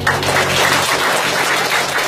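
Audience applauding as a group song ends, with the last chord of the music fading out beneath the clapping during the first second.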